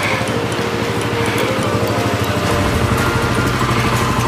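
Motor scooter engine running close by, a low fast-pulsing rumble that gets louder about two and a half seconds in.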